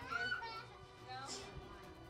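Children's voices chattering as a group, loudest in the first half-second, with background music playing underneath.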